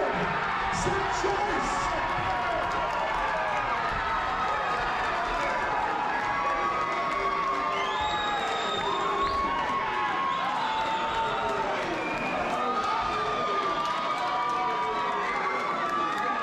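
A crowd cheering and shouting, many voices overlapping with long held calls, as the winner of a boxing bout is declared.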